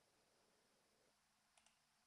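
Near silence, with a couple of very faint clicks a little past halfway.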